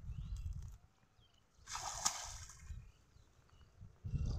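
A single splash of pond water about two seconds in, as a fishing net is pulled through the shallows, with a low rumble before and after it.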